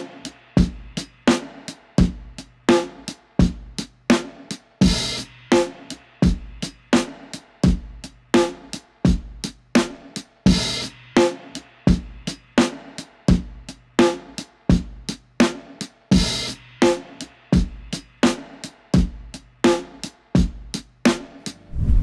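Programmed hip-hop style drum loop: kick and snare hits about one and a half per second over a steady low bass note, with a brighter cymbal crash about every five and a half seconds. It is played back through a chain of eight Waves NLS analog console-emulation plugins on the drum bus.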